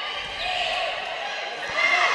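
Volleyball play on a hardwood gym court: a couple of brief sneaker squeaks and one sharp ball contact about 1.7 seconds in, over steady hall background noise.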